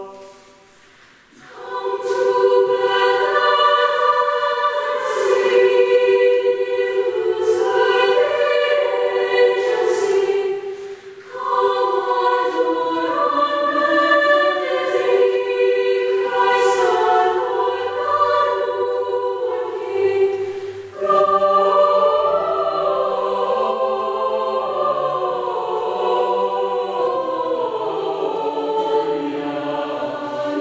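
Youth mixed-voice chamber choir singing in parts. After a short break about a second in, the singing resumes. Lower voices join about 21 seconds in.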